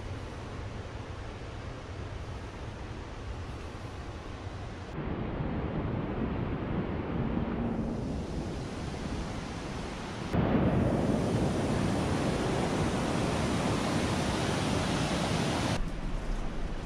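Steady rushing noise of a creek and waterfall, with no distinct events. It gets louder in two abrupt steps, about five seconds in and again about ten seconds in.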